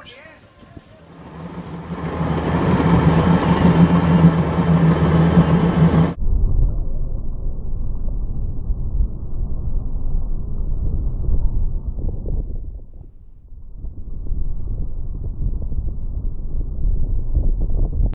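Motorboat running: a steady engine drone with rushing wind and water noise. It cuts off abruptly about six seconds in and is replaced by a muffled low rumble, which dips briefly about two-thirds of the way through and then returns.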